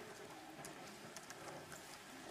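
Faint, scattered taps of a laptop keyboard being typed on, over steady room hiss.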